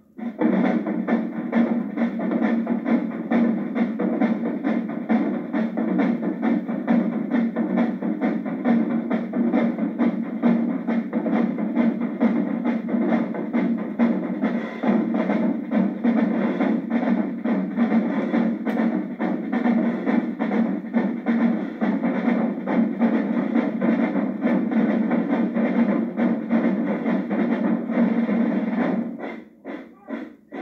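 Marching drumline of snare and tenor drums playing a fast, continuous cadence together, all stopping at once about a second before the end.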